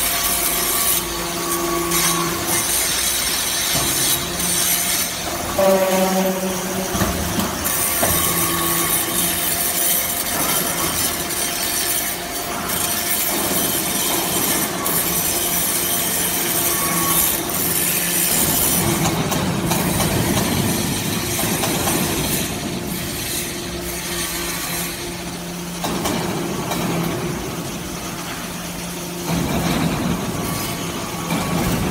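Scrap metal turnings rattling and scraping as a slat chip conveyor carries them into a briquetting press, over the steady hum of the machine's motor and pump.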